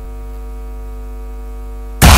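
Steady electrical mains hum: a low, unchanging drone with a stack of evenly spaced overtones, cut off abruptly at the end by loud music.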